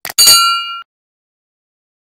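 Subscribe-button sound effect: a short click, then a bright bell ding that rings for about half a second and cuts off, as the cursor clicks the notification bell.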